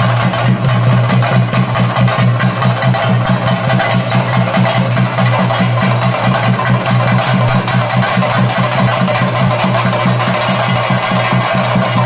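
Ensemble of chenda drums playing a fast, continuous rhythm of dense rapid strokes, over a steady low drone.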